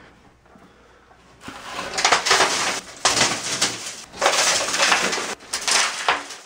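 Shattered tempered safety glass of a shower door being pushed out through a towel, the crumbled pieces crunching and falling in several loud bursts, starting about a second and a half in.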